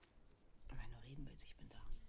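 Faint, softly spoken dialogue from the TV drama being watched, a short quiet line of speech.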